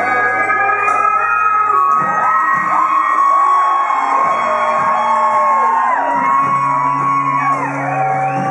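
Live band music in a large hall: acoustic guitar playing with a second guitar, and voices shouting and whooping over it.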